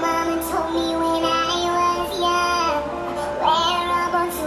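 A song playing: a high singing voice holds long notes that bend and slide, over an instrumental backing.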